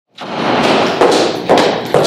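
A run of dull thuds about every half second over a loud steady hiss.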